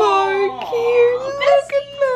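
A high voice singing without accompaniment, bending through a few notes and then holding one long, slightly wavering note in the second half.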